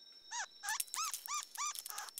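Cartoon bug character's squeaky voice: about six short, high chirps, each rising and falling in pitch, about three a second.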